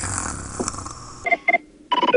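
Incoming-transmission sound effect: a burst of static for about a second, then two short electronic beeps, and a ringing tone that starts near the end.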